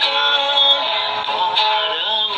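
A man singing a slow melody in long held notes over backing music.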